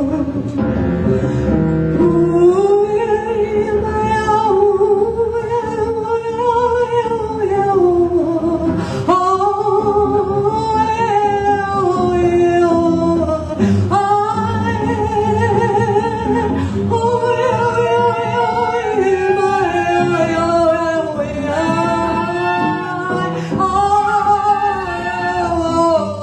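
Live free jazz trio improvising with double bass underneath: two lead lines slide and waver in pitch, with brief breaks about 9 and 14 seconds in.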